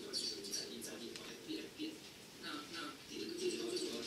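A man's voice talking over a video call, played through a room loudspeaker; it sounds thin.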